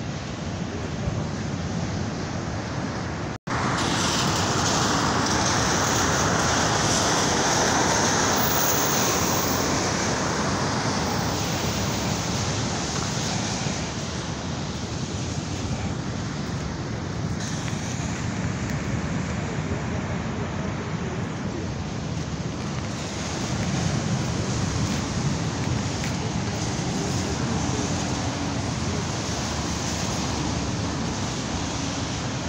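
Outdoor seafront ambience: steady wind rushing over the microphone, mixed with surf and road traffic. The sound cuts out for a split second about three and a half seconds in.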